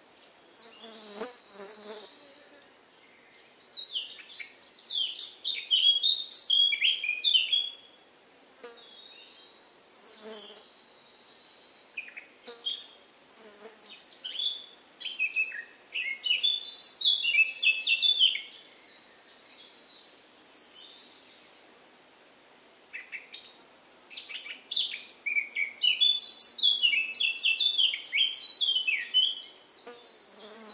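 Songbirds singing: three long bouts of rapid, high-pitched notes that each sweep downward, with short pauses between the bouts.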